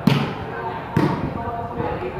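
Volleyball struck hard by hand twice, about a second apart: sharp slaps during a rally, over the chatter of spectators' voices.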